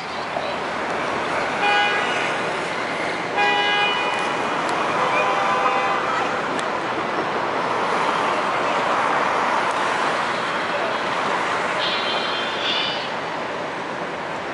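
Midtown Manhattan street traffic with car horns honking: a short honk about two seconds in and a longer one a second and a half later, then a lower horn tone, over a steady wash of traffic noise. A brief high-pitched tone sounds near the end.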